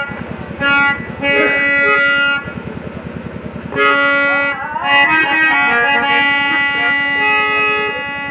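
Live nautanki band music: an electronic keyboard melody over a fast, steady dholak-style drum rhythm. Between about two and a half and four seconds in the melody breaks off and the drumming carries on alone.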